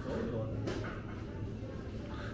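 Shop background with a steady low hum and faint voices. About a third of the way in there is a single light knock, as a plastic drinks bottle is handled on the shelf.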